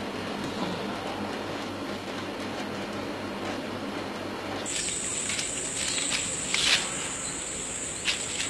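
Steady background noise with a low hum, then, a little over halfway through, an insect's continuous high-pitched call starts suddenly and keeps going, with a few short taps or rustles over it.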